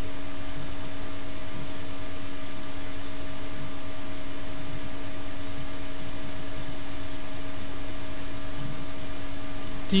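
A steady, even hum with two low held tones and no change or separate events.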